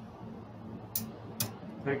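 Casino chips clicking together twice, about a second in and half a second later, as they are stacked by hand.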